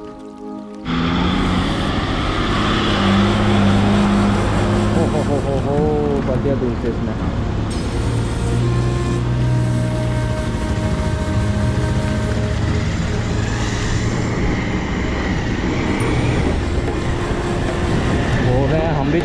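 Motorcycle engine running steadily under heavy wind noise on the bike-mounted microphone as it rides along. A brief stretch of music plays before the riding sound cuts in suddenly about a second in.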